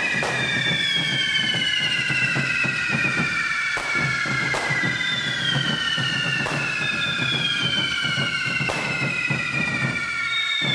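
Several carretilles, hand-held Catalan fireworks on sticks, spraying sparks with overlapping shrill whistles, each whistle slowly falling in pitch. Sharp cracks break through about five times.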